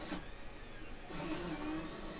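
Monoprice Mini Delta 3D printer running noisily with a steady mechanical hum. From about a second in, its stepper motors whine in short tones that step in pitch as it starts a print with no filament loaded.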